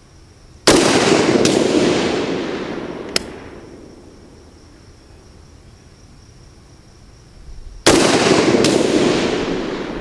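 AK-47-pattern rifle in 7.62×39 mm fired twice, about seven seconds apart, each shot followed by a long echo that dies away over about three seconds. These are slow, aimed shots of a five-shot group fired to check the iron-sight zero at 100 yards.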